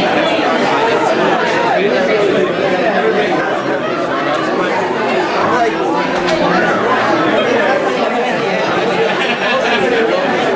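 Crowd chatter: many people talking at once in a packed room, a steady babble of overlapping conversations with no single voice standing out.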